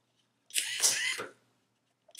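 A Useless Box's small DC gear motor whirring for under a second as it drives the arm up, then cutting off when the held-down interrupter micro switch stops it in the up position.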